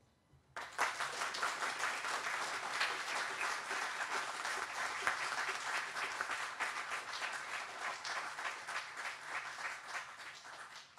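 Audience applauding: many hands clapping together, starting about half a second in, holding steady, and dying down near the end.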